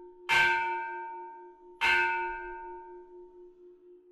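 A bell struck twice, about a second and a half apart. Each strike rings out with several tones and fades slowly, and a low tone hums on after them.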